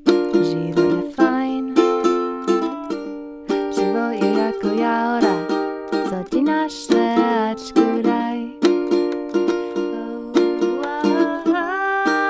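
Kamoa ukulele strummed in a steady rhythm, playing a run of chords.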